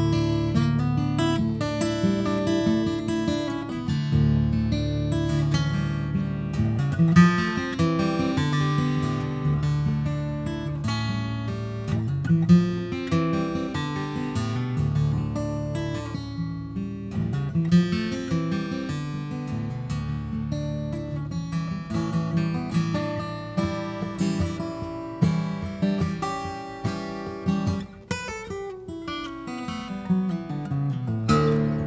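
Taylor Grand Pacific 517 acoustic dreadnought, with mahogany back and sides and V-Class bracing, played solo: a melody over ringing bass notes, with sliding notes now and then and a quick descending run near the end.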